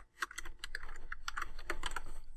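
Typing on a computer keyboard: an uneven run of quick key clicks.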